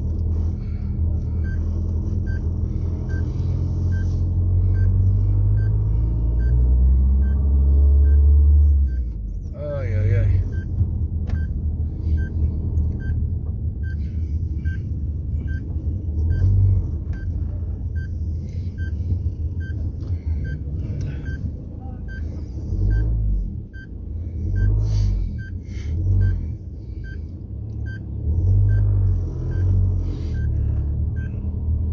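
Car engine and road rumble heard inside the cabin while driving, the engine note rising over the first several seconds and dropping about nine seconds in. Over it, a turn signal ticks steadily, about one and a half ticks a second.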